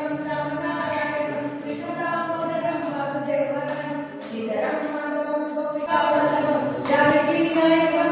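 Devotional aarathi singing: voices holding long sustained notes over a steady pitched drone, growing louder about seven seconds in.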